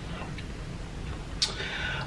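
A quiet pause with a low steady background hum and one sharp click about one and a half seconds in, with a fainter tick earlier.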